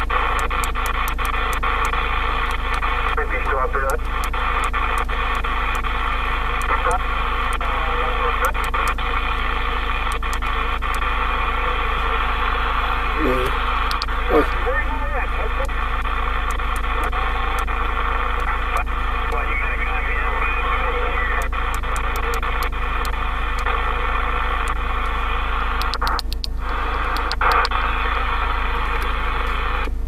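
Receiver hiss and band noise from a President Lincoln II+ transceiver's speaker on the 27 MHz sideband channels, with faint voices of distant stations coming and going as it is tuned through channels, and many short clicks throughout. The hiss briefly drops away about 26 seconds in.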